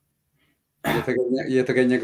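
A man clears his throat about a second in, then goes on speaking.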